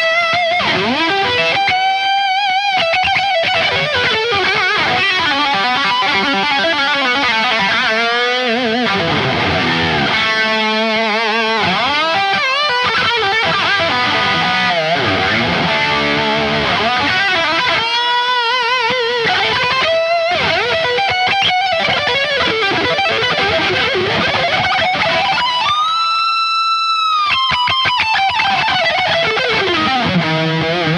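Distorted electric guitar playing a solo: fast melodic runs and notes with wide vibrato, and one long sustained note near the end that bends down in pitch as it is released.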